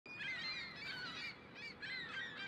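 A flock of birds calling, many short overlapping calls at once, fairly faint.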